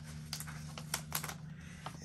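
A paper sticker sheet being handled over planner pages: a scattering of light ticks and crinkles, with a faint steady low hum underneath.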